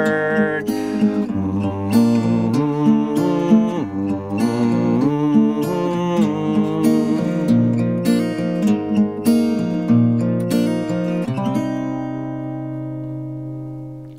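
Steel-string acoustic guitar with a capo, finger-picked in a flowing pattern of plucked notes over changing chords. About 11 seconds in, a final chord is left to ring and slowly fade.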